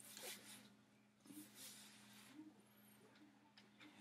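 Near silence: a low steady hum, with a few faint soft swishes of a comb drawn back through soapy hair.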